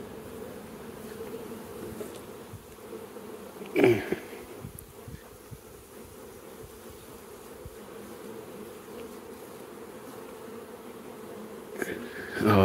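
Steady hum of a large mass of honey bees from an opened hive, with frames covered in bees lifted out. A brief louder sound breaks in about four seconds in.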